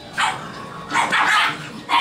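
Yorkie Poo puppies yapping: a short high-pitched yap at the start, a longer run of yaps about a second in, and one more sharp yap near the end.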